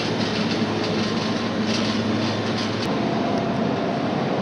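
Metal shopping cart rolling across a store floor, its wheels and wire basket rattling steadily under a low hum.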